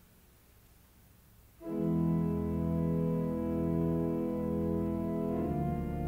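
Church organ entering with a loud, full sustained chord about a second and a half in, after near silence, then moving to a new chord near the end.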